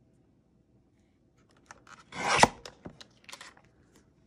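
A Fiskars paper trimmer's cutting arm brought down through a card: about halfway in, a slicing sound swells for half a second and ends in a sharp snap, followed by a few light clicks and paper rustles.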